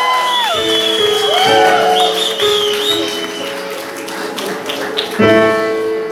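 Electronic keyboard holding sustained chords, a new chord struck about five seconds in, while the audience whoops and cheers with rising-and-falling calls over the first few seconds and a few claps.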